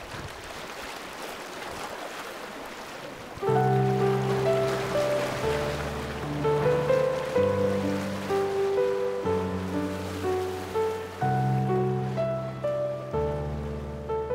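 Sea waves washing against shore rocks, then about three and a half seconds in a piano comes in over them with slow sustained chords, the bass note changing every couple of seconds.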